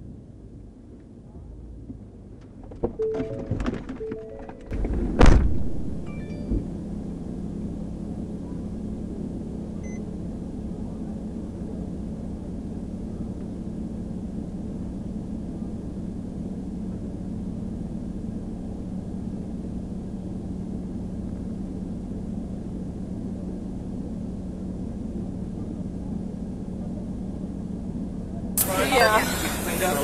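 A sharp knock about five seconds in, then a steady low hum with one held tone; loud voices come in near the end.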